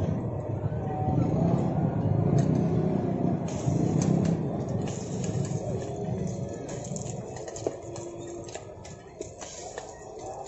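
Roadside traffic rumble with faint background voices, the low rumble fading after about five seconds, with scattered light clicks.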